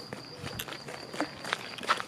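Footsteps on a paved road, a scatter of short scuffing steps, over a faint steady high-pitched tone.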